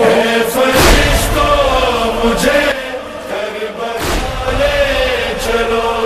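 A male voice chanting an Urdu noha (mourning lament) in long, wavering held notes, with two low thumps, about a second in and about four seconds in.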